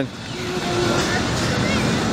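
Steady outdoor city background noise, mostly the hum of road traffic, with faint distant voices.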